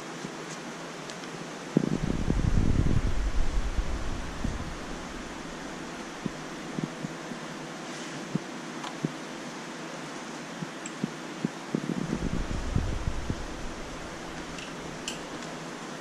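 Steady hissing noise of aquarium aeration and pumps running, with a low rumble twice, about 2 seconds in and again about 12 seconds in, and a few faint clicks.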